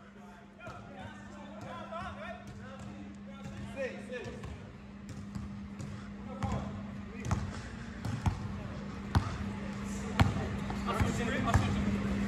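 Basketball bouncing on a gym's wooden floor during pickup play, with sharp bounces about once a second in the second half, amid faint voices of players.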